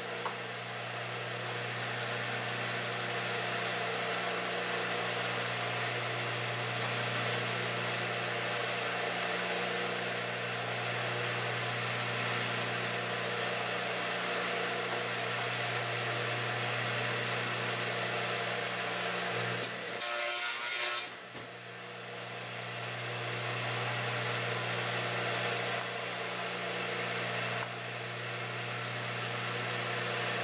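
Craftsman 12-inch radial arm saw running with a steady hum, its blade milling the end tenons of wooden hive-frame top bars. The sound breaks off briefly about two-thirds of the way through, then resumes.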